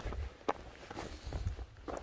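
Footsteps crunching on loose stones and scree while walking down a steep rocky path, with a sharper crunch about half a second in.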